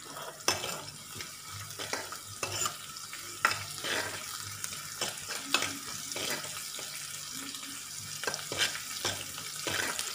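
Chopped onions and seeds frying in oil in a kadai with a steady sizzle, while a steel ladle stirs and scrapes against the pan in short, irregular clicks.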